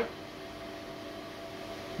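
Union XL8015E dry-cleaning machine running as its pump sends perchloroethylene solvent from the storage tank into the drum: a steady low hum with a faint hiss.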